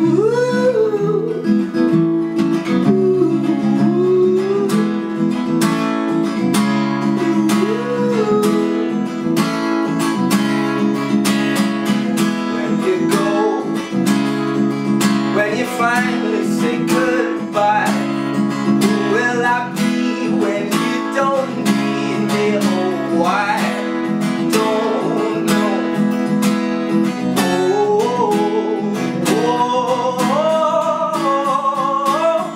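A man singing with his own steadily strummed acoustic guitar, the voice coming in phrases with short gaps between them while the strumming runs on.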